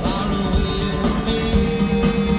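Rock band playing live in an acoustic set, with acoustic guitar, heard through an audience member's recording.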